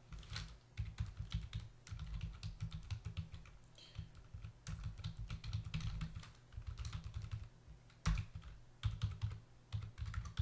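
Typing on a computer keyboard: quick runs of keystrokes, broken by a couple of short pauses.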